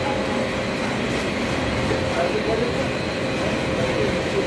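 Steady, dense workshop background noise, a continuous rumble and hiss with faint voices mixed in.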